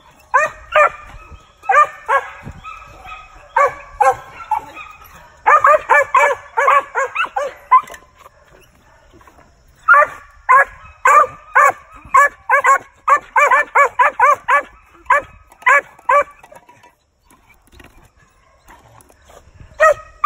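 Young Original Mountain Cur squirrel dog barking up a tree, treeing: short sharp barks in fast runs of about three or four a second, with short pauses between the runs and fainter barks near the end.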